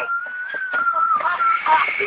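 A high, steady whistling tone that wavers slightly in pitch and stops about a second and a half in, with faint voices under it.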